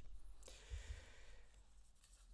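A faint breath from a man at a lectern microphone, about half a second long, starting just under half a second in; the rest is quiet room tone.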